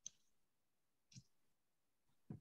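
Near silence with two faint short clicks, one at the start and one about a second later.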